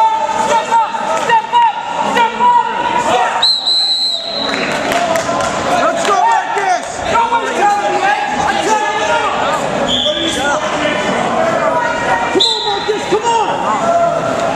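Gym full of overlapping spectator and coach voices shouting during a wrestling bout. A referee's whistle blows once for under a second about three and a half seconds in, stopping the action, and two shorter whistle blasts follow later.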